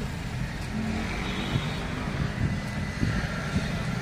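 Car climate-control blower fan running at a raised speed, a steady rush of air from the dashboard vents.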